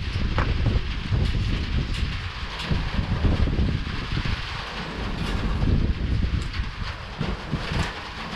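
Storm wind gusting over the microphone: a rushing, rumbling noise that swells and eases unevenly.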